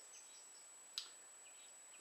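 Near silence: faint, scattered bird chirps and one soft click about a second in.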